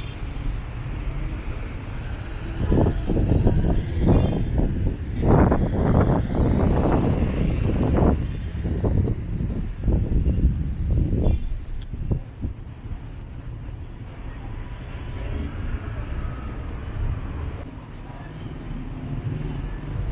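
City street traffic at an intersection: a steady low rumble of car engines and tyres, louder for several seconds in the middle as vehicles pass close by.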